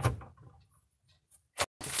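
A single short, sharp knock about one and a half seconds in, from the metal hardware of a desk-clamp monitor mount being handled and set in place.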